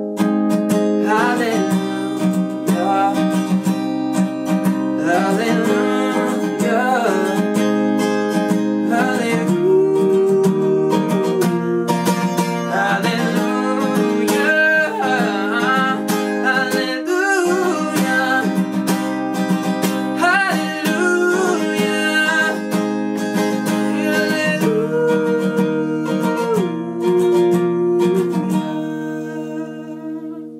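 Fingerpicked acoustic guitar with a man singing long wavering notes over it, with no words, ending on a held chord that fades out near the end.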